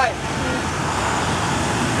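Steady road traffic noise from a line of cars and school buses moving along the street.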